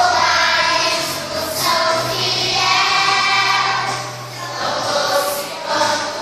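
A group of young children singing a song together as a choir, the voices holding long sung notes.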